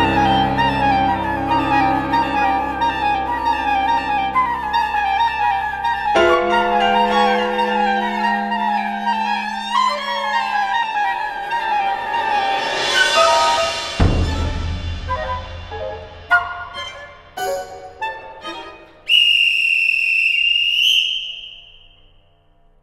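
Contemporary classical chamber music for six players. Fast repeating figures give way to held notes about six seconds in. Midway there is a swell and a deep low hit, then a few scattered short accents and a high held tone that fades away near the end.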